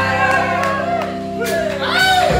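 A live band playing with a singer: held low notes under a bending vocal line, easing slightly in loudness mid-way.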